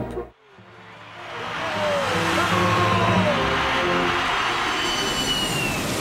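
Jet airliner flying low overhead: a rushing roar that builds over the first two seconds and then holds, with engine whines gliding slowly down in pitch, over background music.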